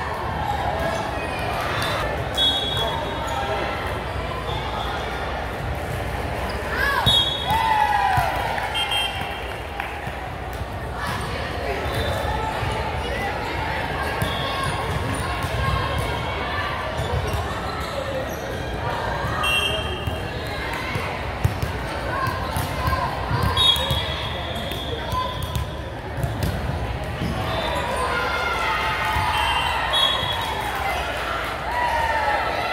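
Busy gym hall during volleyball warm-ups: many voices talking and calling out, volleyballs being hit and bouncing on the hardwood court, with short high sneaker squeaks several times, all in a large echoing hall.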